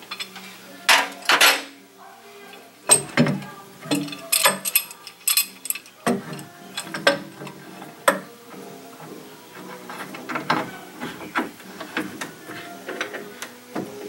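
Metal C-clamps being fitted and screwed tight on two side-by-side wooden studs: irregular clinks, clicks and knocks of metal on metal and on wood as the twisted boards are drawn flush.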